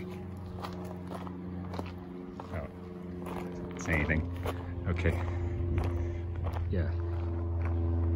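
Bicycle tyres rolling over a gravel trail, with scattered crunches and clicks of stones, over a steady low hum.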